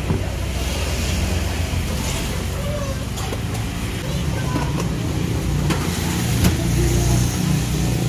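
A dish clinks down on a wooden table at the start, with a few more light knocks later, over a steady low rumble and faint voices in the background.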